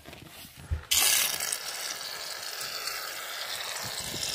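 Aerosol can of shaving cream spraying foam, a steady hiss that starts suddenly about a second in, just after a low knock.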